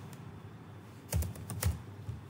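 Computer keyboard typing: a quick run of four or five keystrokes starting about a second in, typing a short word.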